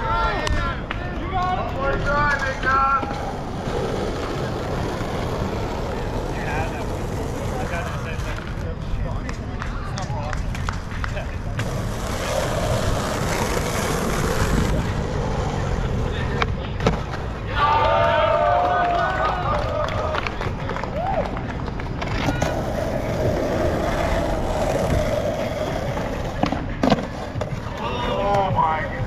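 Skateboard wheels rolling on rough asphalt, with repeated clacks and knocks of boards popping and landing, under voices of onlookers calling out now and then.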